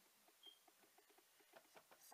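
Near silence: room tone with faint soft ticks about four times a second.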